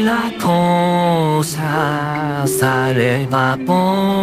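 An AI-generated male singing voice, cloned from an anime character, sings a slow melody, holding about four long notes that waver slightly in pitch.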